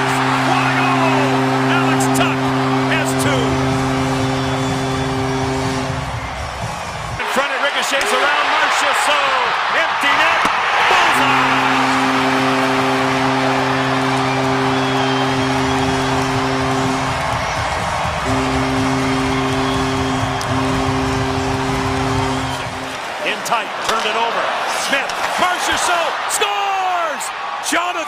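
Hockey arena goal horn sounding a low, steady blast for about six seconds, then, after a pause, two more long blasts in quick succession, over crowd noise. It signals goals by the home team, the Vegas Golden Knights.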